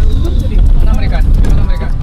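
Deep road rumble inside a moving van's cabin, loud and steady. Voices and music with a beat sit faintly over it.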